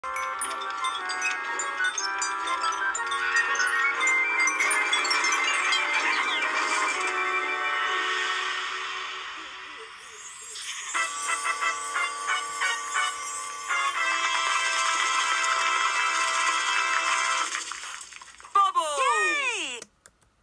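Children's TV show intro theme music, a bright, jingly melodic tune that dips briefly about halfway and picks up again. Near the end a run of falling swooping tones closes it before it cuts off.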